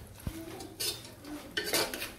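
A metal spoon stirring and scraping chopped dry fruits around the bottom of a pressure cooker, in short scraping strokes about a second apart, with a low thump near the start.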